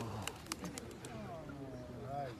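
Released doves flying overhead, their wings clapping in a few quick sharp claps in the first second, with faint voices murmuring underneath.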